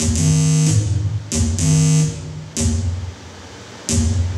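Homemade electronic feedback instrument with a U-matic tape head, played through a mixer: buzzy pitched electronic tones and hiss switching on and off abruptly in a loose repeating loop, about one burst a second, over a steady low hum.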